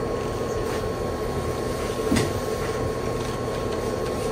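Steady room hum and hiss with a faint constant high whine running under it, and one brief faint rustle or click about two seconds in.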